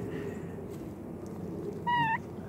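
Steady low background murmur, then near the end one short, high call from a domestic fowl that rises slightly at its close.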